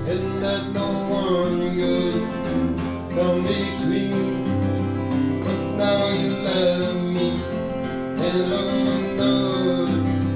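An acoustic guitar played steadily, strummed and picked through changing chords.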